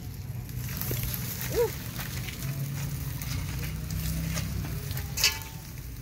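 Open wood fire crackling with scattered faint snaps as meat roasts on sticks over the embers, over a low steady rumble. There is one sharper snap about five seconds in.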